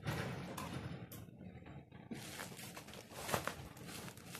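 A plastic courier mailer bag rustling and crinkling as it is handled, with a few short clicks and knocks.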